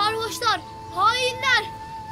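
Two wavering, rising-and-falling voice-like cries, one about half a second in and a longer one about a second in, over background music holding one steady note.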